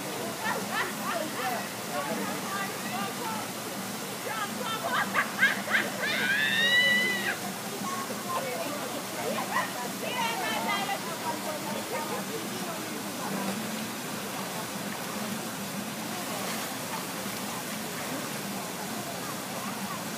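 Children's voices calling out and shouting while they play in a swimming pool, over a steady background of water noise. The loudest sound is a long, high-pitched shout about six to seven seconds in.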